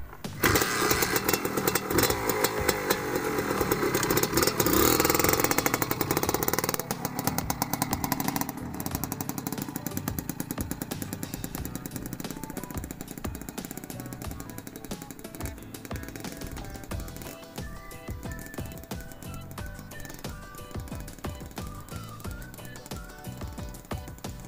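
Suzuki TS 125 two-stroke single-cylinder motorcycle engine revving hard as the bike pulls away, loudest in the first six or seven seconds, then fading steadily as it rides off into the distance.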